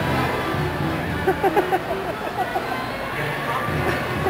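Carousel music playing steadily, with people's voices and short bursts of laughter over it between about one and three seconds in.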